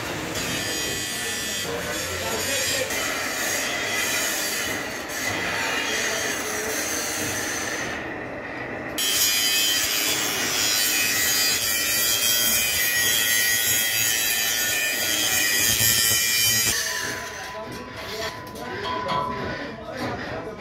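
A 10 mm steel plate grinding and squealing against the steel rollers of a three-roll plate bending machine as it is rolled into a cylinder. The sound grows louder after a break about nine seconds in, then eases off near the end.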